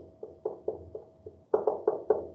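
Dry-erase marker writing on a whiteboard: a quick run of short tapping strokes, about four a second, faint at first and louder in the last half-second.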